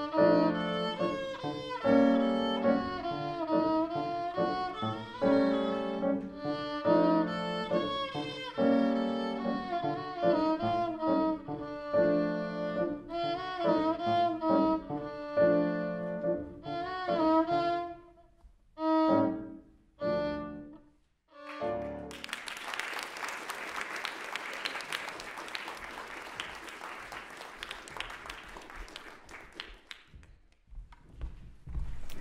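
Violin with piano accompaniment playing to the close of a piece, finishing with a few short separate chords about twenty seconds in. After a brief pause, audience applause fills the rest.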